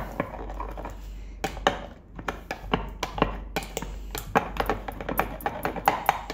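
A muddler knocking and scraping irregularly in a container as it mashes and mixes the cocktail base of strawberry paste, vodka and syrup.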